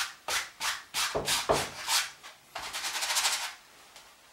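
A bristle brush dragged across stretched canvas in oil paint: about seven separate scratchy strokes in the first two seconds, then a quick back-and-forth scrubbing for about a second, blending the sky.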